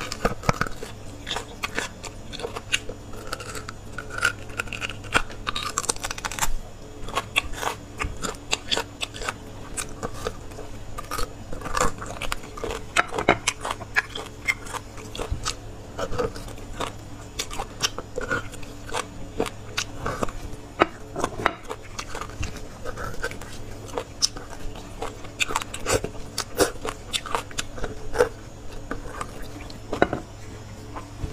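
Close-miked eating of bone marrow from roasted bone sections: chewing and sucking at the bone, with many irregular sharp, wet mouth clicks and smacks.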